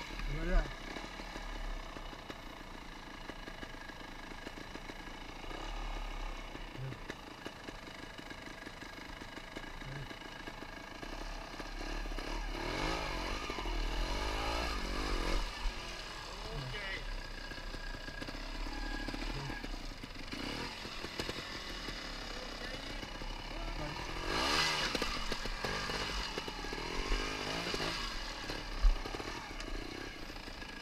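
Trials motorcycle engine running at low revs, with occasional rises in pitch as the throttle is worked on a steep rocky climb. There are voices over it, and a sharp knock near the start and another near the end.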